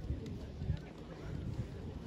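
Wind rumbling on the microphone, with faint voices of the seated group in the background.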